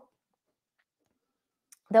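Near silence for almost two seconds, then a woman begins speaking right at the end.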